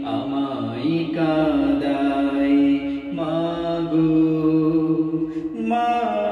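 A man's voice singing a Bengali Islamic gojol without instruments, in long held notes that slide from pitch to pitch, over a lower sustained hummed vocal line.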